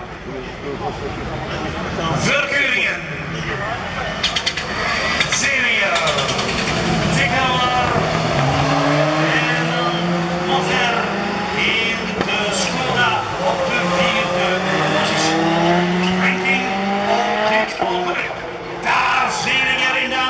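Rallycross race cars running on the track, their engines revving up and falling back through the gears, over a steady noise of engines and tyres.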